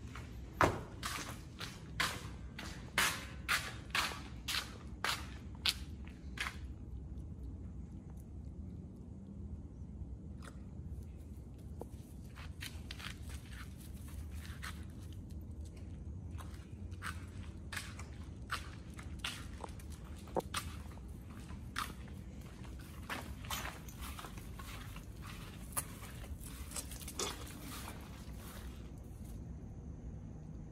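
Footsteps on concrete paving: a steady run of about two steps a second for the first six seconds, then scattered, lighter clicks, over a low steady rumble.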